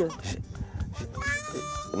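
People laughing in short bursts, then a single long high-pitched call held steady for most of a second near the end.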